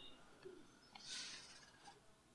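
Near silence: room tone, with a faint brief hiss about a second in.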